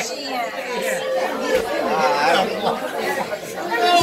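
Several voices talking over one another as bar-room chatter, with no music playing.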